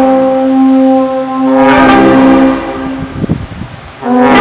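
A small band of trumpet, clarinet, trombone and a low brass horn plays a slow Holy Week sacred march in long held chords. The chords swell about two seconds in, then drop away to a quieter passage in the last second before the next chord.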